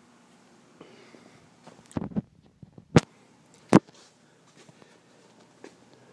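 Quiet room tone broken by a couple of soft thumps about two seconds in, then two loud, sharp knocks less than a second apart.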